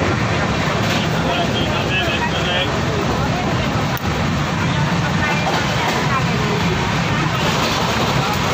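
Steady rumble and rush of a moving passenger train, heard from inside the coach, with indistinct voices in the background.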